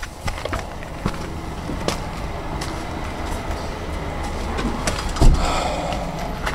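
People clambering through the debris of a burned-out house: scattered crunches and clicks of charred wood and rubble underfoot over a low rumble of handheld-camera handling. A heavy thump comes about five seconds in.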